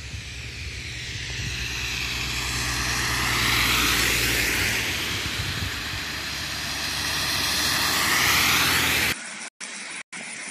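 Vehicles passing on a wet, slushy highway, their tyres hissing. The rush swells twice, peaking about four and eight and a half seconds in, then cuts off suddenly near the end.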